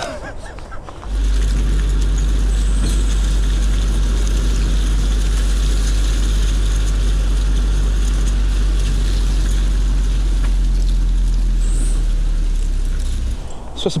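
1965 VW Beetle's air-cooled flat-four running steadily as the car drives, a loud, even low rumble that starts about a second in and cuts off just before the end.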